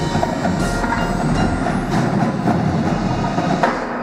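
Indoor drumline playing: marching snare, tenor and bass drums with the front ensemble's mallet keyboards, a fast, dense run of strokes.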